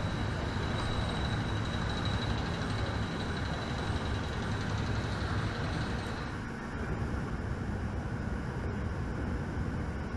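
Steady low machinery rumble with a hiss, as heard on a tanker's deck, with a faint thin high tone held for the first six seconds.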